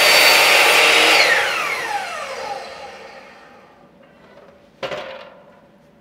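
Bosch miter saw running and cutting through a cedar board at an angle, then the blade spinning down after the trigger is released, its whine falling in pitch for about two seconds. A single knock comes near the end.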